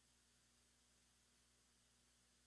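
Near silence: only a faint, steady low hum and hiss.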